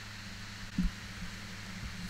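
Steady low electrical hum with a faint hiss, broken by one soft low thump a little under a second in and a fainter one near the end.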